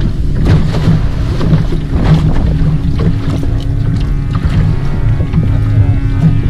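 Small open fishing boat at sea: a loud, steady low rumble of wind and waves on the hull, with a steady hum underneath and scattered light knocks.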